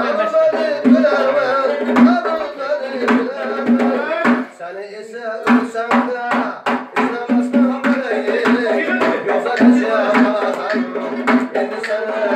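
Live folk music: singing over a long-necked plucked lute and a doira frame drum beating a steady rhythm. The voice drops out briefly about four and a half seconds in, then a quick run of sharp drum strokes follows.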